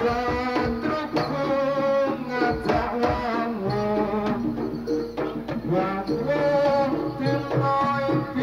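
Live Javanese jaranan music: a barrel-shaped kendang drum keeps a steady, driving rhythm under a wavering melody line, played without a break.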